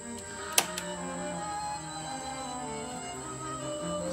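Music from an FM station playing through a speaker from the Akai CR-80T receiver's tuner, at moderate level, with a single sharp click about half a second in.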